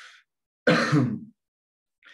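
A man clears his throat once, a short rough voiced sound lasting about half a second, about a second in, after a faint breath.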